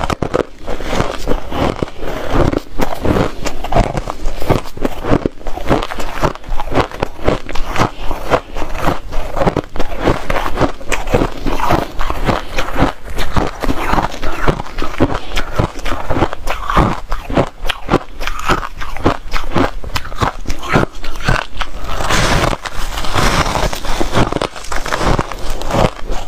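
Shaved ice being chewed, close to a clip-on microphone: rapid, irregular crunches, several a second, one bite running into the next.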